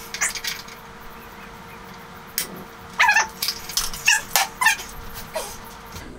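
Metal vise grips and scooter frame being handled: a few short metallic clinks and squeaks, a cluster about three seconds in and more a second later, over a faint steady hum.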